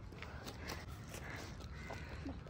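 Quiet footsteps on paving: a few soft, irregular clicks over a faint low outdoor background.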